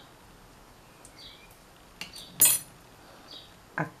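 Metal knitting needles clicking against each other as the last stitch is bound off: a few faint ticks and one sharp, ringing clink about halfway through.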